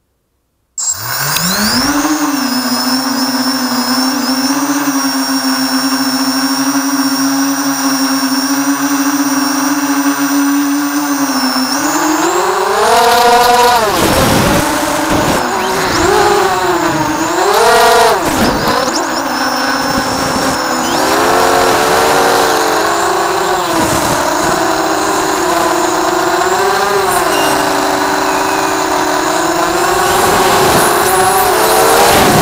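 Four Cobra 2204 1960kv brushless motors on a quadcopter spinning 6x4.5 Thug Props, heard close up from the camera on the frame. They spin up just under a second in and hold a steady whine for about ten seconds. Then, in flight, the pitch rises and falls with the throttle, with hard punches shortly after takeoff and again a few seconds later that load the 12A ESCs.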